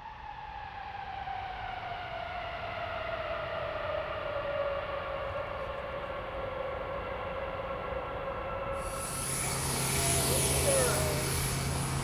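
C-5 Galaxy jet engines whining as they wind down after touchdown, the whine falling steadily in pitch for about nine seconds. Near the end it gives way suddenly to a louder, steady engine hiss with a low hum.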